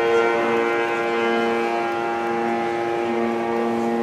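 Concert wind band of saxophones and brass holding one long sustained chord, with a lower note swelling in and out.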